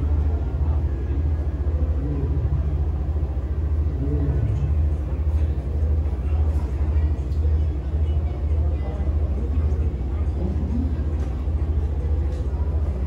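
A loud, steady low rumble with faint background voices of people talking.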